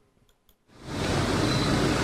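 Near silence, then about two-thirds of a second in a steady rush of outdoor street noise fades in and holds.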